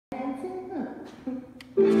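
A woman speaks briefly, then about two seconds in recorded dance music starts from a portable CD player. It opens suddenly and loudly with a held chord of bowed strings and bass.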